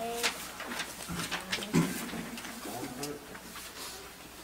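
A lull filled with faint scattered voices and short rustling or shuffling noises, with no music; a brief louder knock or voice sound comes just under two seconds in.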